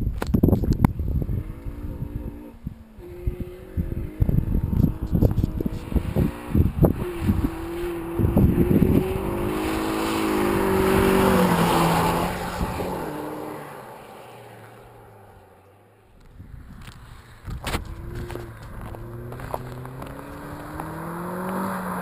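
Honda Civic with a K&N cold-air intake and Magnaflow axle-back exhaust accelerating hard past the camera. The exhaust note climbs, drops back and climbs again through the gears, loudest as it goes by, then fades into the distance. Its engine grows louder again near the end as it comes back, with low wind rumble on the microphone in the first seconds.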